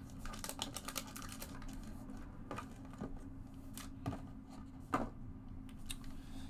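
Small clicks and taps of hands handling a trading-card box and lifting the sealed pack out of it: a quick run of clicks in the first second and a half, then scattered single taps.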